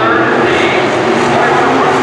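IMCA sport modified race cars' V8 engines running at racing speed around a dirt oval: a loud, steady drone of more than one engine, its pitch drifting as the cars pass.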